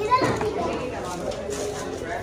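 Background chatter of shoppers' voices in a shop, with a child's short high-pitched cry sliding down in pitch right at the start.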